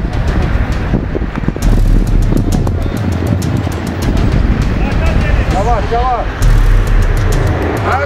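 Loud outdoor roadside ambience with a heavy low rumble that swells twice, with people's voices; one voice calls out briefly a little past the middle.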